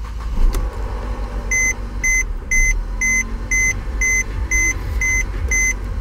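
Mercedes engine just started and idling unsteadily, close to stalling, while the new steering lock and programming key are learned. From about a second and a half in, an electronic warning beep repeats about twice a second over the idle.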